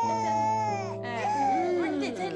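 An infant crying in two long wails, the first breaking off about a second in, over background music with sustained low notes.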